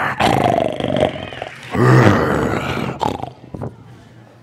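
Two loud lion-style roars, the second and louder one about two seconds in, dying away near the end.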